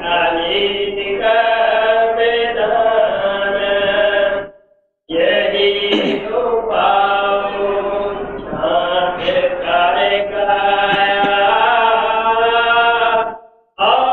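A devotional hymn (shabad) sung in long, held melodic lines, with two brief breaks between lines: about four and a half seconds in and near the end.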